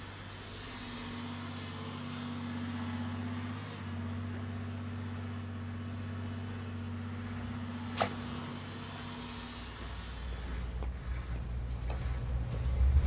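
Heavy quarry machine's engine running steadily, with a single sharp click about eight seconds in; the engine grows louder near the end.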